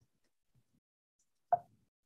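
Very quiet, with one short soft sound about one and a half seconds in.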